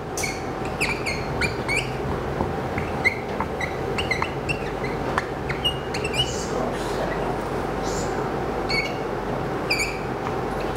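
Whiteboard marker squeaking against the board in short strokes and clusters as words are written and arrows drawn, over a steady room hum with a faint constant tone.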